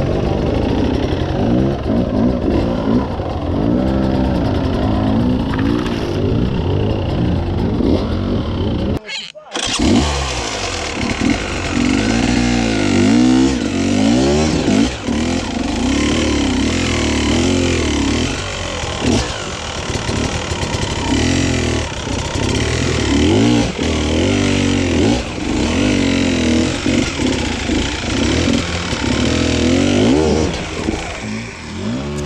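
Beta enduro motorcycle engine revving up and down repeatedly under load on a steep rocky climb, with a brief sharp break in the sound about nine seconds in.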